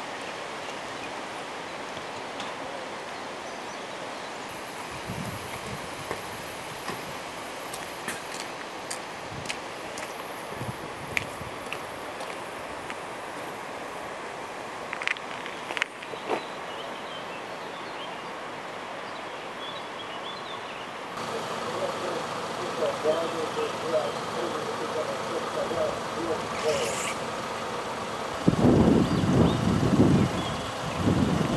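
Outdoor ambience of a rainy roadside: a steady hiss with scattered faint ticks. From about two-thirds in, people talk at a distance, and near the end a louder voice comes in.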